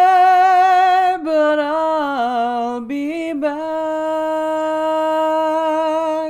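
A woman singing unaccompanied, holding a long note with vibrato, then stepping down through a falling run of notes about a second in. After a short break she holds a second long, steady note.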